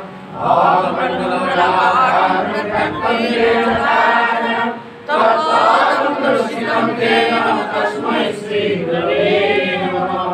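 A group of voices chanting a devotional prayer together in unison, the melody rising and falling, with brief breaks for breath just after the start and about five seconds in.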